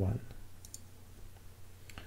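A few light computer mouse clicks, the sharpest one near the end, over a quiet low room hum.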